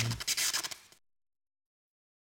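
A short burst of scratchy electronic noise with a low bass tone at its start. It breaks into a fast stutter and dies away about a second in.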